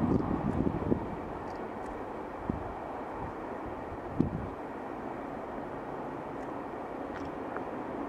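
A steady rushing noise with a few faint, short high chirps. Wind buffets the microphone through the first second, and there are brief low thumps about two and a half and four seconds in.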